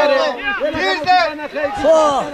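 Men's raised voices talking and calling out over one another.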